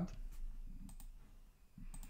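A few faint clicks of a computer keyboard and mouse as a name is typed into a form and confirmed.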